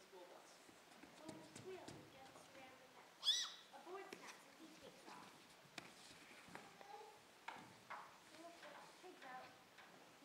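A child's short, high-pitched squeal about three seconds in, standing out over faint children's voices and light knocks on a wooden stage floor.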